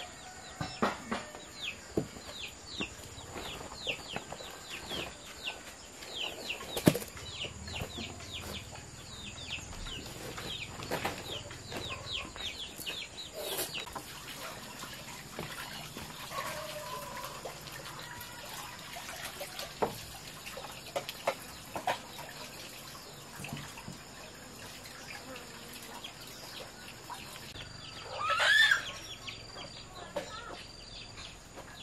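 Farmyard chickens: a quick run of short, high, falling peeps through the first dozen seconds, scattered clucks, and one loud squawk near the end, with water splashing now and then.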